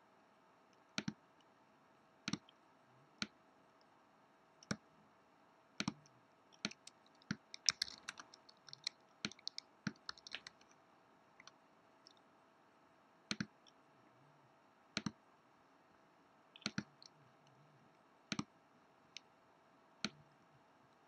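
Computer mouse clicking: single sharp clicks a second or two apart, with a quicker run of clicks and key taps in the middle, over a faint steady hum.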